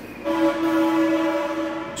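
A train horn sounding one long, steady blast of about a second and a half, loud over the room.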